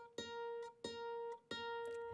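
Kora plucked on the same single note three times, about two-thirds of a second apart, each note ringing clearly before it stops.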